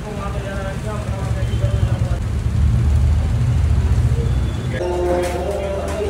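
A steady low rumble of street traffic, loudest in the middle, with voices over it and a held pitched tone near the end.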